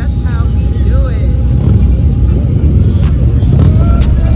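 A large group of motorcycles, mostly big touring baggers, running together at idle and pulling away slowly: a loud, continuous low rumble of many engines. Voices carry over it in the first second or so.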